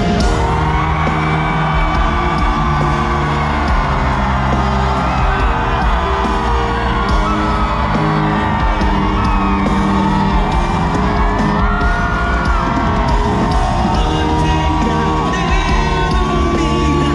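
Live pop concert music over a stadium sound system: full band with sustained bass and a lead voice singing, with a crowd whooping and yelling along.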